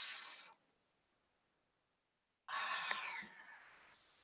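The end of a spoken word fades out, then dead silence, then a breathy exhale of about a second comes in about two and a half seconds in, with a faint click in it.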